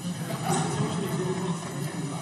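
Indistinct murmur of many voices in a large chamber, no single speaker standing out.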